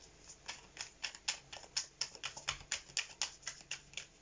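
Tarot cards being shuffled by hand: a quiet, even run of crisp card clicks, about five a second.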